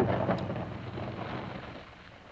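A convertible car driving away on the old film soundtrack, a steady noise with no clear engine note that fades out over the two seconds as the car pulls off.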